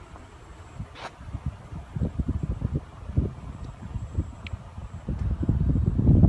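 Wind buffeting the microphone in irregular low gusts that grow stronger near the end, with a light click about a second in.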